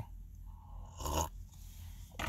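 A sip of coffee from a cup: one short slurp about a second in, over a low steady hum.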